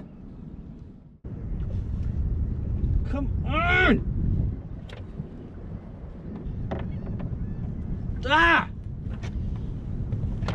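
A man crying out twice, short frustrated yells with no clear words, over a steady low rumble.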